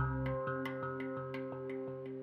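Steel handpan played with the fingertips: quick light strikes, about five a second, over ringing, overlapping notes that slowly fade.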